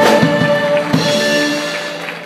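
Live Greek band of bouzouki, violin, keyboards and drums holding a final chord, with two drum hits, the second about a second in. The music then fades away.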